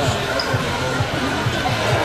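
Echoing ambience of an indoor soccer hall during play: background voices over a string of dull, low thumps, with the reverberation of a large room.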